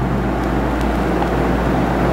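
Steady low electrical hum with an even hiss: the recording's background noise in a pause between words.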